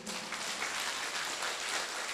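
Audience applauding: many hands clapping at a steady level.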